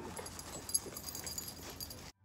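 Footsteps of a man and two Yorkshire terriers walking through dry fallen leaves: a light, steady crackling rustle.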